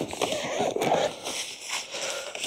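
Wind gusting on the microphone with rain, a rough, crackling noise that swells and falls.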